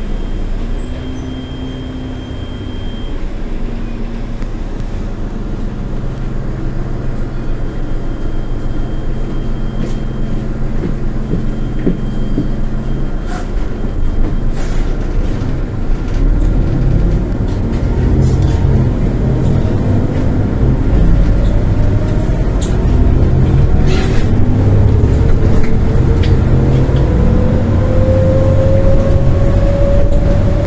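Iveco Urbanway 18 CNG articulated bus heard from inside the cabin: the engine runs steadily at a standstill, then, about halfway through, the bus pulls away, getting louder with a steadily rising whine as it accelerates. A few knocks are heard along the way.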